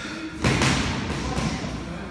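A loud thump about half a second in, followed by a noisy rustle that fades over the next second and a half.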